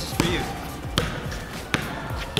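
A basketball bouncing on a hard court, three bounces roughly three quarters of a second apart, with faint voices behind.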